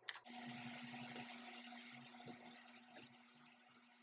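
Faint rushing noise that starts just after a click and fades away over about three seconds, over a steady low hum.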